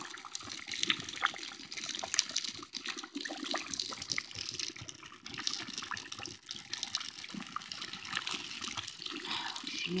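A pan of motor oil and muck sizzling and bubbling over an open flame, with dense, steady crackling.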